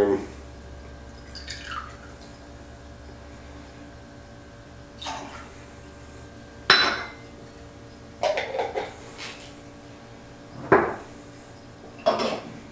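A metal jigger and a glass olive jar clinking against a cocktail shaker as olive brine is measured out and poured in. There are a handful of short, sharp clinks spread a second or more apart, the loudest about seven seconds in.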